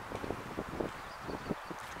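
Wind on the microphone, a faint low rumble, with a few soft irregular knocks of the camera being handled.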